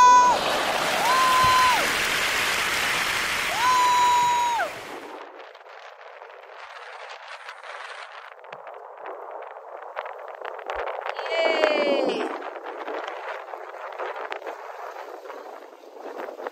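People shouting and whooping as a jumper leaps from a rock ledge into the sea: three long, level, high-pitched calls over a loud rushing noise. After about five seconds it drops to a quieter steady hiss of sea and wind, with one more falling shout near the twelfth second.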